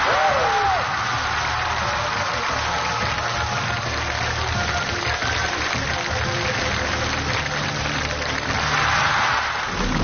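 Studio audience applauding over background music with a steady bass line, with a brief exclamation in the first second.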